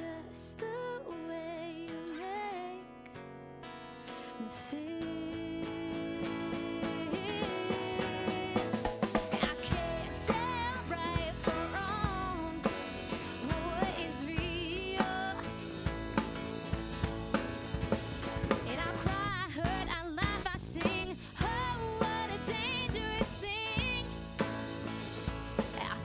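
A live pop band playing: a woman singing over strummed acoustic guitar, electric bass and drum kit. The first few seconds are sparser, then the full band comes in about five seconds in with a steady drum beat.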